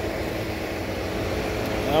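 Steady low hum of an idling diesel semi-truck engine.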